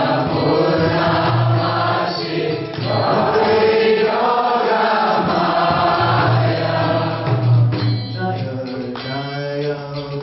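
A man's voice singing a slow devotional Vaishnava song into a microphone, the melody held and ornamented, with other voices joining in.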